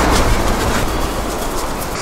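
Water spraying from a hand-held shower-head hose at an outdoor tap onto a dark object and the concrete below: a steady hiss that eases slightly toward the end.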